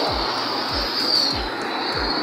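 Steady outdoor wind and street noise picked up by a handheld camera carried on foot, with low thumps from the walker's steps about twice a second.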